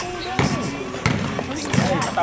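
Basketball being dribbled on a gym floor: three bounces about two-thirds of a second apart, with voices from the bench and stands around it.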